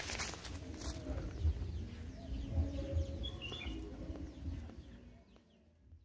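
Outdoor ambience with birds calling faintly: a few short high chirps and softer low calls. Low rumbling thumps sound on the microphone throughout, and all of it fades out a little after five seconds in.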